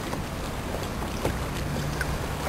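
Steady wind and water noise from a kayak moving along the river, with a faint low hum underneath.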